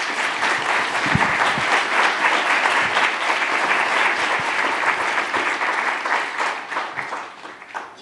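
Audience applauding, steady and full, then fading out near the end.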